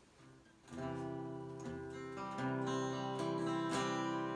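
Acoustic guitar strumming chords, starting just under a second in after a short quiet, with the chords ringing on between strokes.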